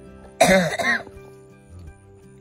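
A person coughs loudly, two quick coughs close together about half a second in, over steady background music.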